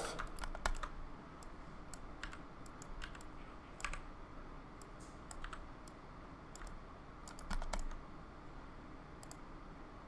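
Faint, irregular clicking of a computer keyboard and mouse, single clicks and small clusters with pauses between.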